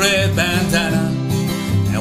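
A man singing a country song to his own steadily strummed acoustic guitar, with bass notes alternating under the strum.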